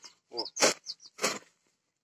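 Steel hoe blade scraping through dry soil and weeds in two short strokes, about half a second apart, dragged along the ground rather than lifted.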